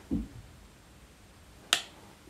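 A single sharp click a little under two seconds in, from makeup tools being handled, preceded by a soft low thump right at the start.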